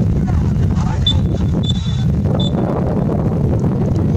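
Referee's whistle blown three times, short toots about a second apart with the middle one a little longer, over a steady rumble of wind on the microphone.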